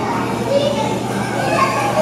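Background chatter of children's and other visitors' voices, with no clear words.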